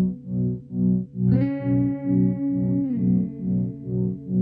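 Live instrumental music on effects-processed guitar: a low chord pulses about twice a second, and a higher sustained note enters about a second in, then slides down slightly near the three-second mark.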